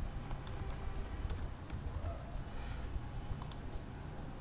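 Scattered clicks of a computer keyboard and mouse, a few at a time with some quick pairs, over a low steady background hum.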